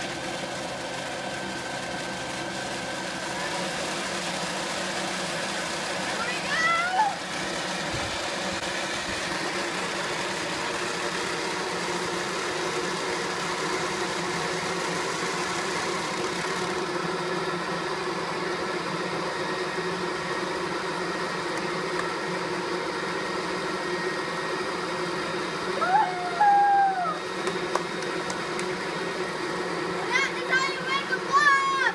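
Electric leaf blower running steadily, blowing air into a plastic-sheet blob to inflate it: a constant rush of air with a steady motor whine. A short voice sound breaks in twice, about seven seconds in and near the end.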